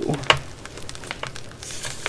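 A sheet of paper being picked up and handled: a few small taps and clicks, then a short rustle of paper near the end.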